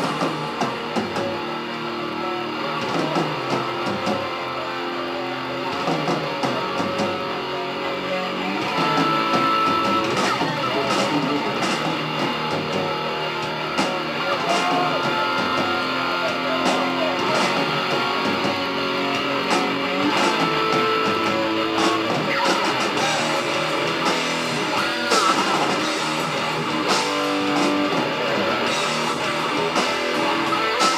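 A thrash metal band playing live: distorted electric guitar riffs driven by drums, the song kicking in right at the start.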